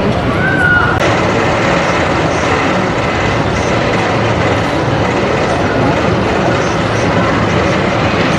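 Rocky Mountain Construction roller coaster train running along its steel track, giving a steady, unbroken noise.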